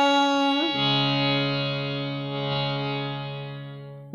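Harmonium reeds holding a sustained note. Under a second in, it moves to lower held notes, which slowly die away.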